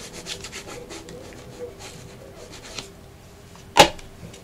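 Hands rubbing and sliding paper and card on a craft table while glue is applied to a journal page, a faint scratchy rustle in quick strokes. A single sharp knock near the end.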